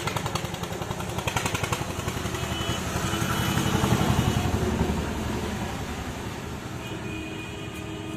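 A motor vehicle's engine passing close by: a fast, even pulsing that grows louder to about four seconds in, then fades away.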